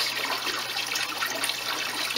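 Steady running water, an even splashing flow with a low steady hum beneath it.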